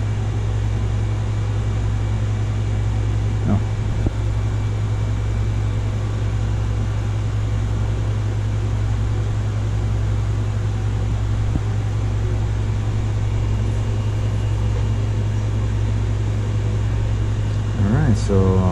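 Steady low hum and whir of a running fan, unchanging throughout, with a faint click about four seconds in.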